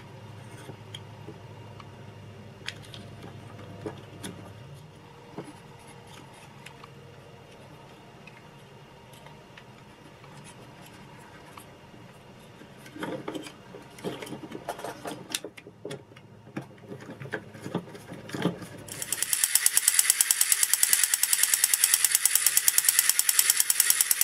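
A plastic toy-robot gearbox being handled, with scattered clicks and knocks of small plastic parts. About nineteen seconds in, a loud, fast, even mechanical rattle starts and runs on.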